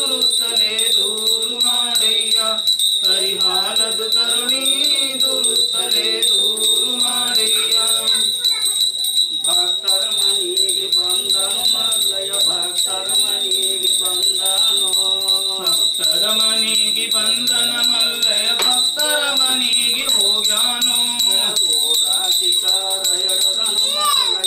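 Small brass hand bells shaken continuously in a ritual, a steady high ringing jingle, over music with a voice.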